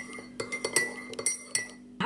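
Metal teaspoon clinking against the inside of a ceramic mug while stirring milky tea: a quick run of light, ringing clinks that stops shortly before the end.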